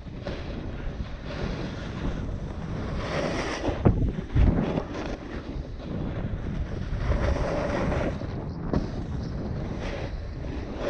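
Wind rushing over the microphone during a fast descent on a groomed ski slope, mixed with the hiss and scrape of edges on packed snow that swells through the turns. A burst of low wind buffeting about four seconds in is the loudest moment.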